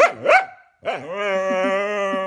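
Corgi vocalizing: a couple of short yowls that bend up and down in pitch, then, after a brief pause, one long, steady howl held on a single note.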